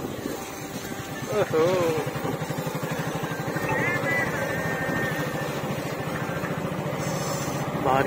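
Bajaj Pulsar motorcycle's single-cylinder engine running steadily at low road speed, with an even, fast exhaust beat.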